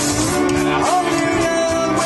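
A live country-rock band playing. About a second in, a single note slides up in pitch and is held over the accompaniment.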